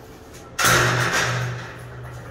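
An interior door being opened by its lever handle: a sudden scrape and clunk of the latch about halfway through, fading over about a second as the door swings.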